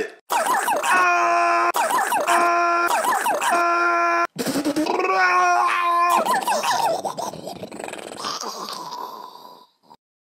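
A person screaming: several long, wavering cries held one after another, then a noisy tail that fades away near the end.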